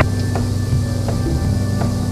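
Steady low drone of a Beechcraft A36 Bonanza's flat-six engine and propeller in the climb, heard through the headset intercom, with two faint clicks.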